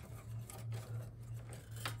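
Faint scraping and rustling of hands handling a cable and connector inside a computer case's metal drive bay, with a small click near the end, over a steady low hum.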